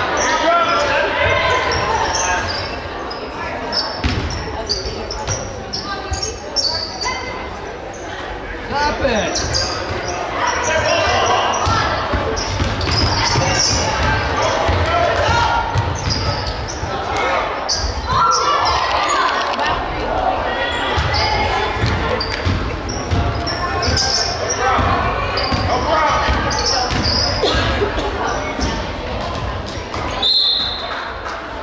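Basketball game in play on a hardwood gym court: a ball dribbling and players' and spectators' voices calling out, echoing in the large gym.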